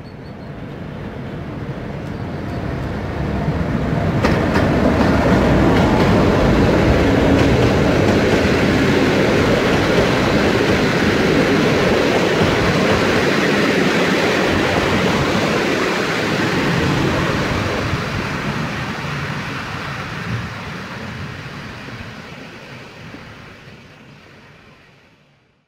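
Passenger train hauled by an EP05 electric locomotive passing close by: the rolling noise of wheels on rails builds as it approaches, stays loud for about ten seconds as the carriages go past, then fades as the train pulls away. A single sharp knock stands out a few seconds in.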